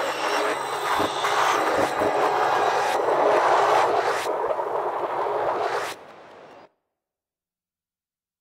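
A loud, steady rushing noise with a few sharp knocks scattered through it, cutting off abruptly about six seconds in.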